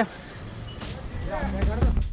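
Low background rumble of a busy shop, growing slightly louder, with a brief stretch of someone talking in the background shortly before the end.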